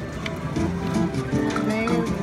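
WMS Gold Fish video slot machine playing its electronic tune and chimes as a new spin of the reels starts, over a background of casino voices.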